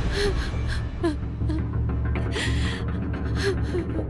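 A woman crying in repeated gasping sobs and short whimpers, with a longer breathy sob about halfway through, over a low, dark background music drone.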